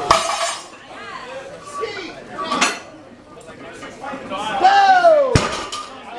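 Iron barbell weight plates clanking as they are handled and loaded: three sharp metallic hits, about half a second in, in the middle and near the end, among voices.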